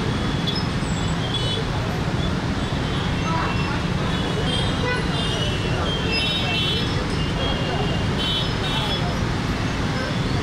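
Steady rumble of a stalled, jammed road full of cars, auto-rickshaws and motorbikes, with short horn honks repeating throughout.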